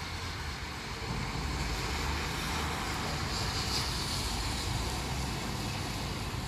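Steady hiss of light rain with the low rumble of traffic on a wet road; tyre hiss swells briefly in the middle as a car passes.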